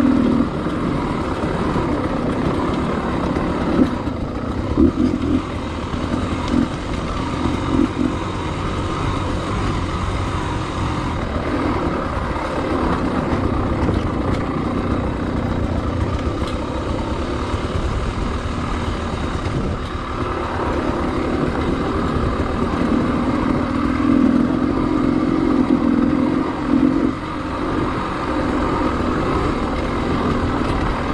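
Enduro dirt bike engine running as it is ridden over rocky singletrack, the throttle rising and falling in short surges. There is a longer louder stretch near the end.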